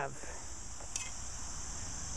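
Steady high-pitched insect chorus, a continuous trill such as crickets make, with a faint single click about halfway through.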